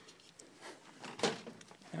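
Quiet handling noise: a few soft knocks and rustles, the loudest a little past halfway.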